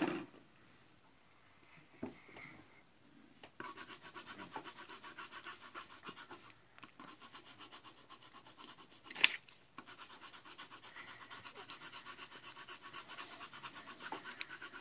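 Coloured pencil scratching on paper in rapid back-and-forth strokes, several a second, as a large area of sky is shaded in; the strokes begin about three and a half seconds in. A single sharp knock sounds about nine seconds in.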